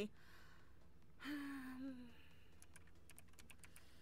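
Light computer-keyboard typing: a quick run of soft key clicks through the second half. Before it, a breath and a short hummed "mm" from a woman.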